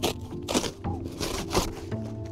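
Flat sheets of cardboard rustling and scraping as they are handled and laid on grass, in a few short bursts, over soft background music.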